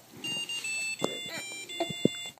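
A piezo buzzer playing a tune as a string of short, high beeping notes, each held about a quarter second, with a person's voice faintly underneath and a knock about halfway through.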